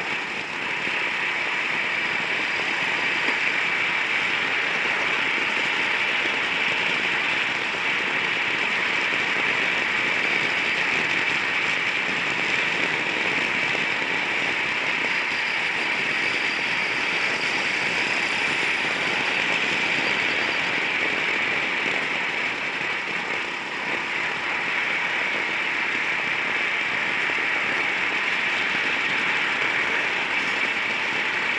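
Gas-powered racing go-kart running flat out, its engine heard from the onboard camera together with steady rushing wind and road noise. The level dips briefly twice, about eight seconds in and again near the middle of the second half.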